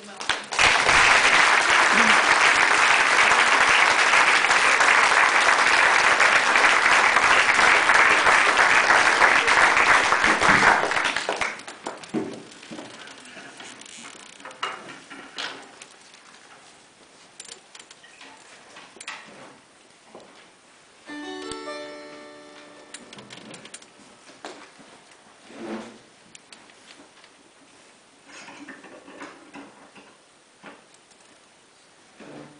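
Audience applauding loudly for about eleven seconds, then stopping. A quiet hall follows, with small rustles and a quick run of rising notes a little past the middle.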